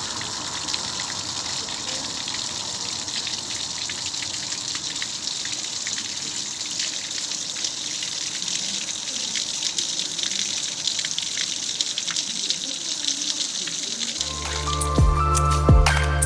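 Steady rush of splashing water with many small drips. Background music with a deep bass comes in about fourteen seconds in.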